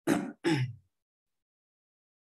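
A man coughing twice, two short coughs in quick succession.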